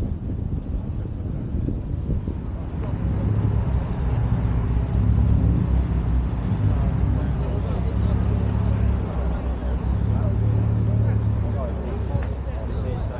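A car engine running steadily nearby, a low hum that grows stronger a few seconds in and drops away near the end, under the chatter of people's voices.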